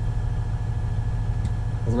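Caterpillar 980M wheel loader's Cat C13 six-cylinder diesel idling steadily, heard from inside the cab as a low, even rumble.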